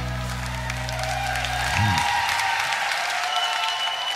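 A live band's last chord ringing out, with low sustained bass and guitar notes that bend and stop about two seconds in, while the audience applauds and cheers.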